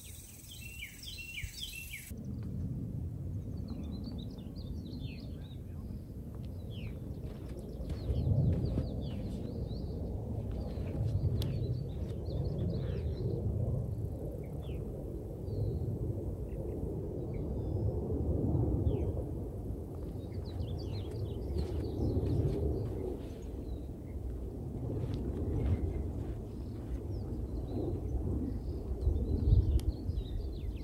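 Wind rumbling on the microphone, rising and falling in gusts, with small birds chirping now and then.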